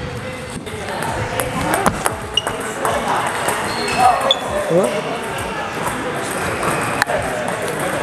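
Celluloid-style table tennis ball ticking sharply off the bat and the table as a short pendulum serve is played, a few separate clicks. Voices of other players carry through the hall underneath.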